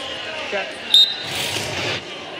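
Arena crowd noise with a brief, high referee's whistle blast about a second in, starting the period of a wrestling bout, followed by a short swell of crowd noise.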